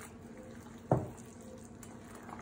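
Hands squishing and kneading a wet raw ground-meat mixture of beef, pork, milk-soaked bread and egg in a stainless steel bowl, a faint wet sound, with one short sharp sound about a second in.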